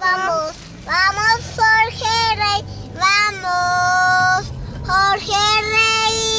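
A young girl singing without accompaniment, in short phrases and then two long held notes.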